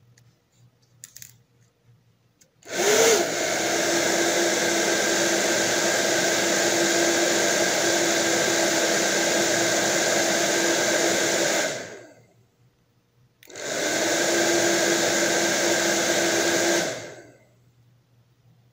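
Hair dryer blowing: it starts a few seconds in with a short rising whine as the motor spins up, then runs as a steady rush of air over a motor hum. It cuts off after about nine seconds, is switched on again for about three seconds, and stops.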